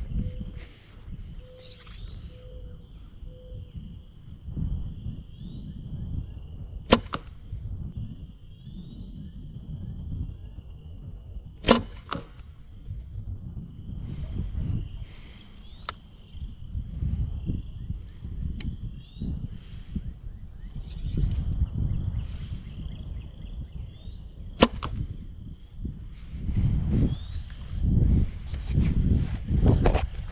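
Arrows shot from a bow at a hanging target: three sharp cracks several seconds apart, the middle one the loudest, over a low rumbling background.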